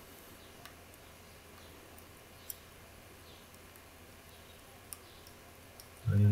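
Faint, sparse clicks from the pin tumblers of a City R14 euro cylinder being picked with a hook pick under tension; a few sharp ticks, the loudest about two and a half seconds in. The pins click as they rise and set, more quietly than usual because the lock is full of WD-40.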